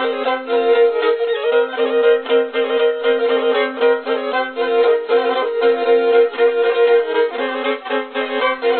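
A bowed fiddle playing a quick Turkish folk tune over a steady drone note, the melody changing notes several times a second.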